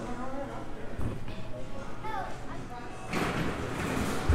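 Background music and indistinct voices in an arcade room, with a single knock about a second in and a louder rushing noise starting near the end.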